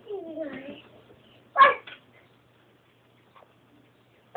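A toddler's wordless vocal sounds: a falling whine in the first second, then one short, loud, high-pitched cry about a second and a half in.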